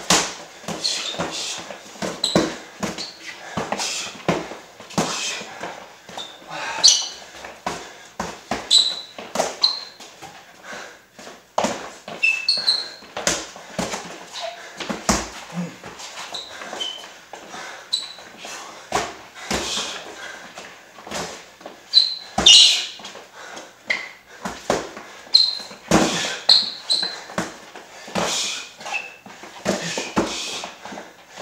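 Boxing gloves landing in a run of punches, as sharp slaps and knocks every second or so. Rubber-soled sneakers give short high squeaks on the gym floor, along with shuffling footsteps.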